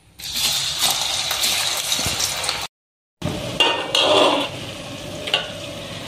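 Slices of raw banana going into hot coconut oil and deep-frying, the oil sizzling loudly as they hit it. The sound cuts out completely for half a second near the middle, then the frying sizzle carries on, a little quieter, with a few light clinks.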